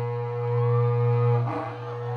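Berrante, the Brazilian cattle-herder's horn made from an ox horn, blown in a long, low, steady note. The note breaks off briefly about one and a half seconds in and then starts again.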